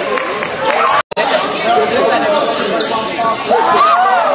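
Indistinct overlapping voices of players and onlookers calling out during a basketball game in a large sports hall. The sound cuts out completely for an instant about a second in.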